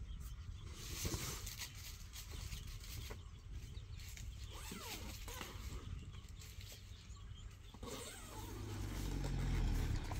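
Outdoor ambience with small knocks and faint chirps, then in the last two seconds a car engine's low rumble grows steadily louder, peaking at the very end.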